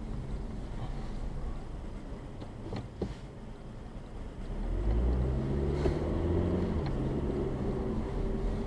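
Car driving on a city street, heard from inside the cabin: a steady low engine and road rumble. A short click comes about three seconds in. From about five seconds in, a low engine hum comes up louder and stays.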